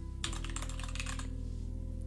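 Typing on a computer keyboard: a quick run of keystrokes entering a short two-word title, which stops after about a second and a half.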